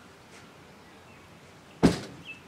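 A single sharp, loud thump near the end, dying away quickly, over a faint steady outdoor background.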